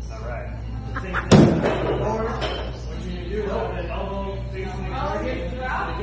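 A single heavy thud about a second in: a throwing axe striking a wooden target board, over background voices and music.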